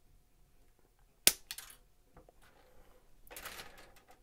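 Flush side cutters snipping a part off a plastic model-kit runner: one sharp snap about a second in, followed by a few small clicks. A brief rustle of handling comes near the end.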